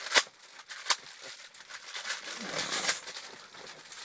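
Klondike ice cream bar's wrapper crinkling and tearing as it is bitten through: two sharp crackles in the first second, then a longer rustling tear a little past halfway.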